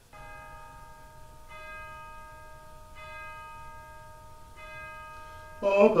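A bell struck four times, about a second and a half apart, each stroke ringing on until the next.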